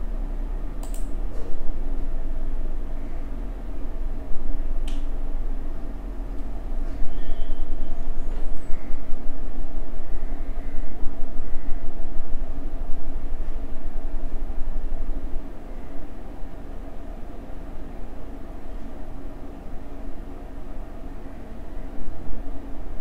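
A steady low rumble of background noise that swells and fades, loudest in the middle, with a sharp click about a second in and another about five seconds in.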